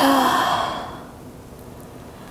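A woman's long sigh out, loud at first with a brief hum of voice, then trailing off over about a second: a releasing breath in a yoga forward fold.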